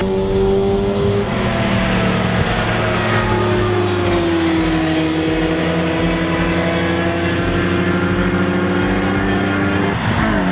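Racing cars running on a circuit, their engine notes held at fairly steady revs with slow rises and falls in pitch. The pitch steps up about a second in and drops sharply near the end.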